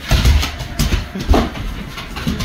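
Heavy thumps and scuffling of a large Cane Corso scrambling across a hardwood floor, with low rumbling throughout. A person laughs briefly at the start.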